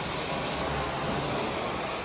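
Steady rushing suction of a Vantool 14SS carpet-cleaning wand with a hybrid glide, extracting as it is drawn across the carpet.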